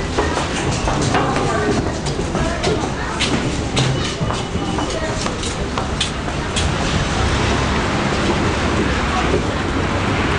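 Busy elevated subway station: footsteps and clatter of people walking out, with voices and a low rumble that grows steadier in the second half.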